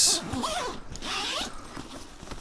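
Zipper on a Porta Brace camera bag being pulled open: a scratchy rasp about a second long, starting about half a second in.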